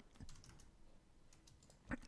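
A few faint computer keyboard clicks in near silence.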